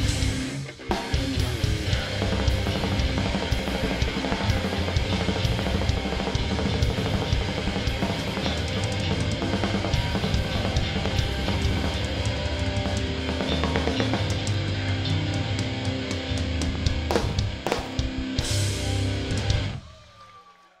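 A live hardcore band playing an instrumental passage on electric guitar, bass and drum kit, with heavy bass drum. The band drops out for a moment about a second in, then plays on steadily, and the music stops suddenly near the end.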